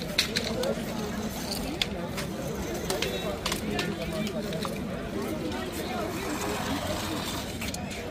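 Many people talking at once, with scattered sharp clinks and knocks as glass candle holders and plastic crates are handled and set down on stone paving.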